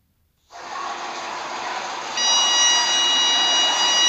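A steady rushing hiss starts suddenly about half a second in. From about two seconds in, a car's parking-sensor warning sounds over it as one continuous high tone, the solid tone that signals an obstacle very close.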